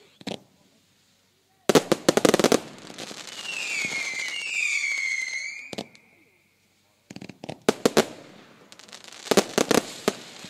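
Consumer firework cakes firing: a quick volley of sharp bangs about two seconds in, then a whistle that wavers and falls in pitch for about two seconds. Further volleys of cracks follow near seven and nine seconds.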